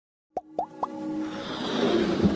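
Intro logo-animation sound effects: three quick rising pops about a quarter second apart, then a swelling whoosh as electronic music builds.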